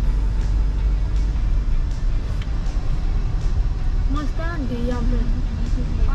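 Road and engine noise inside a moving car's cabin: a steady, heavy low rumble. A voice sounds briefly about four seconds in.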